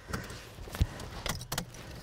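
Seatbelt being pulled across and buckled in a car: a scatter of light clicks and rattles, with a low knock a little under a second in and a few sharper clicks about a second and a half in.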